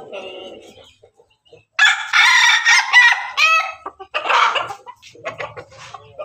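A crossbred rooster of pelung, bangkok and ketawa chicken stock crowing: one loud call of about two seconds that breaks into a run of short notes at its end, then a shorter call a second later. Softer clucking comes before it.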